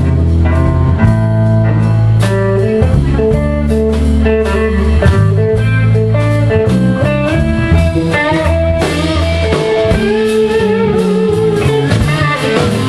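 Live blues-style band music: an archtop hollow-body electric guitar plays a melodic lead over the band, with held low notes underneath. In the second half the guitar bends and wavers its notes.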